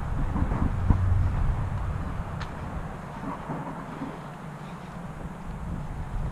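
Wind buffeting the camera microphone outdoors: an uneven low rumble that eases after about two seconds, with a sharp click about a second in.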